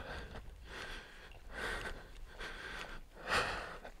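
A man breathing audibly close to the microphone, about four breaths roughly a second apart.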